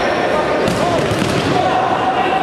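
Indoor futsal play in a reverberant sports hall: the ball being kicked and knocking on the court, with players' voices calling out over a constant hall din. A couple of sharp knocks come about a second in.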